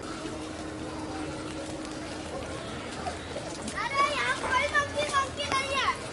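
Loud, high-pitched voice calls in the second half: a quick run of short, falling cries repeated several times a second for about two seconds, over a low background hiss.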